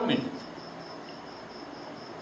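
A cricket chirping in the background: a faint, thin high-pitched pulse repeating evenly about five times a second over a low room hiss.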